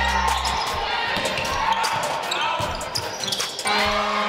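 Live court sound from a basketball game: a ball dribbled on a hardwood floor and sneakers squeaking, over crowd and player voices in a large hall. Backing music with a low bass note fades out just after the start and comes back near the end.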